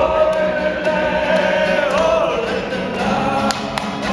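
A crowd of people singing together to a strummed acoustic guitar, holding long notes and moving to a new note about halfway through.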